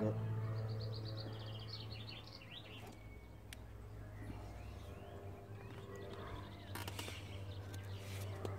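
A small bird singing a quick run of high chirps in the first couple of seconds, over a steady low hum. A few sharp clicks come near the end.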